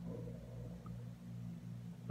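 A faint, steady low hum.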